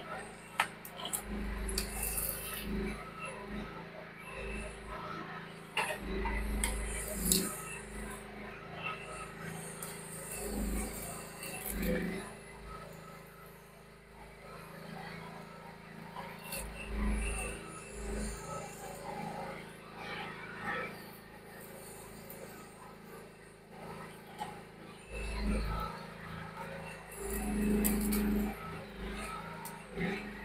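Mini excavator engine running steadily while the operator works its arm through brush, with scattered sharp cracks and clicks from branches and the machine.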